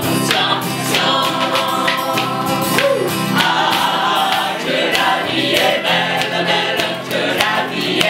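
Mixed choir of men's and women's voices singing live together, with regular hand claps keeping the beat.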